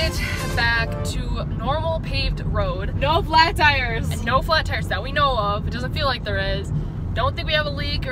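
Steady low road and engine rumble inside a moving car's cabin, under a woman talking.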